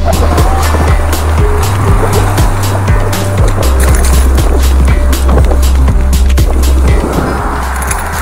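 A 29-inch-wheel mountain bike rolling fast over a rough gravel and wet dirt track. The tyres crunch on stones, and the bike rattles and knocks again and again, all over a heavy rumble of wind on the microphone.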